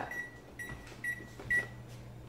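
Electric range's oven control keypad beeping as buttons are pressed to set the bake temperature to 400 degrees. A high beep ends just after the start, followed by three short beeps about half a second apart, over a faint low hum.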